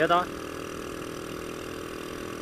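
Honda Astrea Grand's small single-cylinder four-stroke engine running steadily as the bike cruises at about 40 km/h, its note holding even, with road and wind noise under it.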